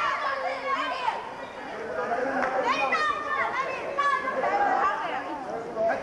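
Several voices talking and calling out at once, overlapping into an unbroken chatter with no clear words.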